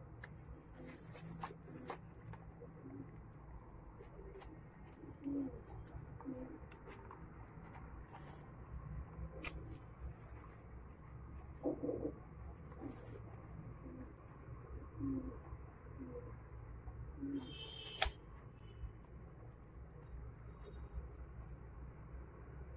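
Small scissors snipping through craft paper in a series of quiet, scattered cuts, with a sharper click near the end. Faint, short low sounds repeat every second or so in the background.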